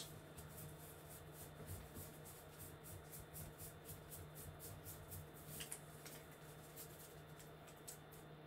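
Near silence: faint, soft ticks of trading cards being flipped through by hand, over a low steady hum.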